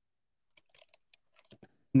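Computer keyboard typing: a short run of faint key clicks starting about half a second in.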